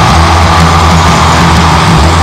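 Loud heavy metal music: a dense, continuous wall of distorted guitars and drums over a steady low bass.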